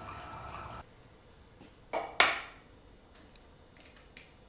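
Electric citrus juicer's motor humming steadily, cutting off under a second in. About two seconds in come two sharp clinks of kitchenware, the second louder and ringing briefly.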